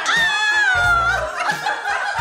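A woman's long, high-pitched squeal, jumping up at the start and then sliding slowly down in pitch for about a second: a delighted shriek of surprise. Background music with a bass beat plays underneath.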